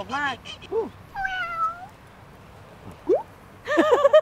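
A few short, pitched animal calls: a brief one just before a second in, a longer falling one right after it, and a short rising one near the end.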